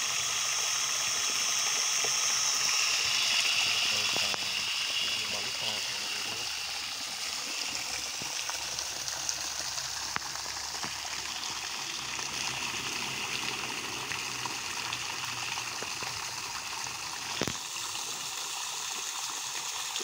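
Jet of water from a homemade 12 V pump driven by a 775 DC motor, splashing onto a pond surface as a steady rushing hiss. There is a brief knock near the end.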